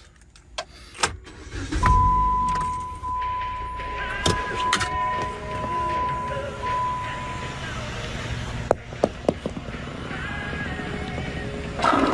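A car moving off, its engine rumbling, with a single steady high beep held for about five seconds and several sharp clicks and knocks.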